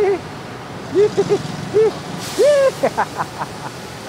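Stir-frying in a wok over a high flame: a steady low rush of the fire, with a brief loud hiss as the wok flares up about two seconds in. Short shouts break in over it.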